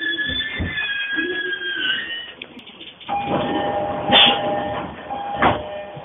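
Commuter train car in motion, heard from inside: high squealing tones that waver in pitch for the first two seconds, then a rumble with a steady mid-pitched tone from about three seconds in, broken by a sharp knock near the end.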